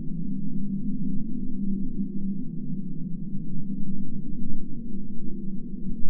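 A low, steady droning soundtrack score with no high sounds in it and no break.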